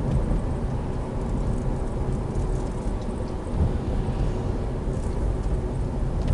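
Steady low rumble of road and engine noise inside the cabin of a moving Toyota Isis 2.0 minivan.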